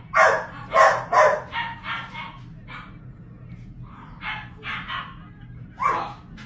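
A dog barking repeatedly: a quick run of about seven loud barks, a pause, then a few more barks. A steady low hum runs underneath.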